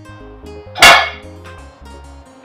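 A single loud dog bark just under a second in, over soft background music.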